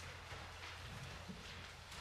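Quiet room tone with a steady low hum and a few faint footsteps on the floor.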